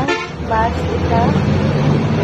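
A vehicle horn honks once briefly at the start, over the steady low rumble of a bus engine heard from inside the bus.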